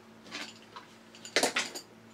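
Faint handling noise, then one sharp clack about a second and a half in and a few lighter ticks: a small hard tool being set down on a wooden desk.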